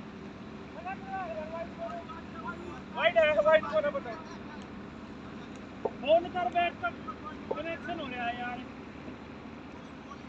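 Players' voices shouting and calling out in short bursts, loudest about three seconds in and again between six and eight seconds, over a steady low hum. A single sharp knock just before six seconds.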